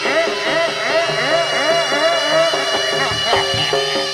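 Live Javanese jaranan ensemble music: a melody of quick, repeated sliding notes, about three or four a second, over sustained pitched tones, with a brief low rumble a little past three seconds in.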